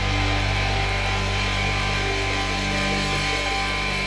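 Progressive metal band playing live: sustained, held chords on guitar and keyboards, with no drum strikes.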